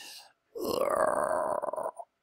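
A man's drawn-out hesitation sound, a held "uhhh" or "hmm" at a steady pitch. It starts about half a second in after a short breath and stops abruptly near the end.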